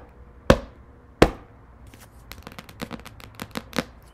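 Oracle cards being handled on a hard surface: three sharp knocks in the first second and a half, then a quick run of lighter flicks and clicks near the end as cards are drawn.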